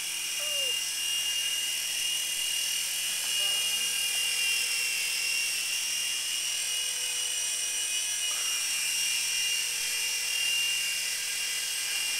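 Small electric motors and rotors of a Gen-X micro RC toy helicopter in flight, giving a steady high-pitched whine that wavers slightly in pitch as the throttle changes.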